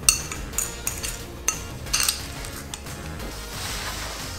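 Metal spoon clinking against a ceramic bowl while stirring chopped herbs into mayonnaise: about six sharp clinks spread over the first three seconds.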